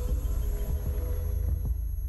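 Deep bass drone of a broadcaster's sign-off ident, with a steady tone above it and soft pulses that come closer together toward the end.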